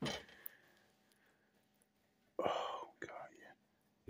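A man whispering under his breath, in short breathy bursts about two and a half seconds in, after a brief sound at the very start.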